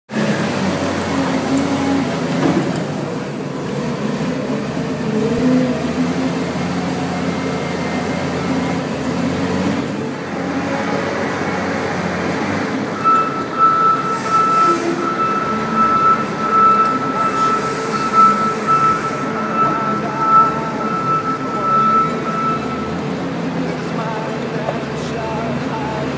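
Case 721F wheel loader's six-cylinder diesel engine working under load as the bucket digs into a fertilizer pile and lifts a full load. A steady high whine joins in about halfway through and stops shortly before the end.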